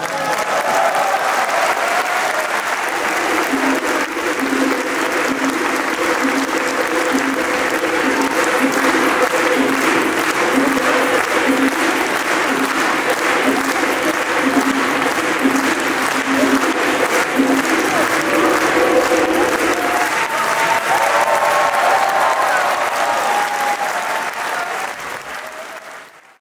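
Large audience applauding, with voices mixed in, fading out near the end.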